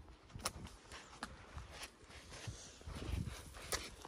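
Faint footsteps on a dry dirt trail through brush, with a handful of sharp clicks scattered among them and a few heavier steps about three seconds in.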